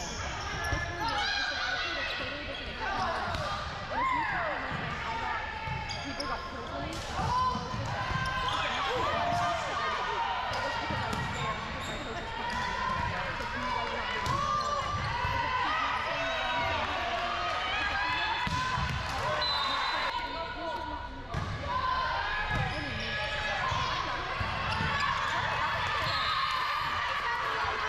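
Volleyball rally in a gymnasium: the ball being struck by hands and arms at intervals, among the continuous voices of players and spectators.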